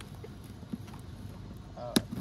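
Handling noise from an extension cord and a cardboard box: a few faint ticks, then one sharp click just before the end.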